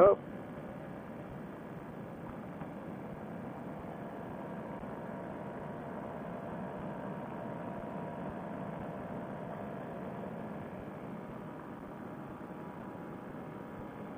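Fresh Breeze Monster paramotor engine and propeller running steadily at cruise, heard as a muffled, even drone with wind noise, swelling slightly in the middle.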